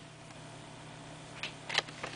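Quiet room tone with a faint steady hum; near the end, two small clicks of plastic packaging being handled.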